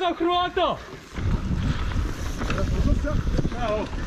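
A downhill mountain bike rolling fast over a dirt trail, heard as a low rumble with wind buffeting a helmet-mounted camera's microphone. It starts about a second in, just after a short call.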